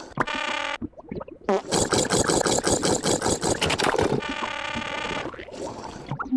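Tubby Custard machine sound effects as it dispenses custard into a bowl: a short electronic tone, then a fast mechanical rattle lasting about two and a half seconds, then another electronic tone.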